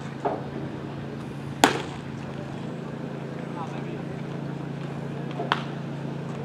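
Sharp pops from a baseball game: the loudest, about a second and a half in, is a pitched ball smacking into the catcher's mitt, with a smaller pop near the end. A steady low hum runs underneath.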